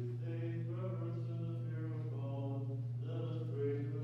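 Byzantine liturgical chant: a slow, sustained melodic line sung on shifting pitches, over a steady low hum.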